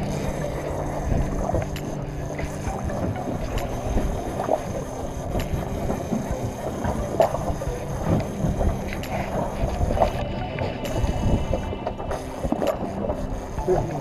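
A boat engine running steadily with a low hum, under wind and water noise.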